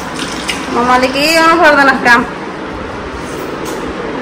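A high-pitched voice makes one drawn-out, sing-song sound that rises and falls, starting about a second in and lasting about a second and a half.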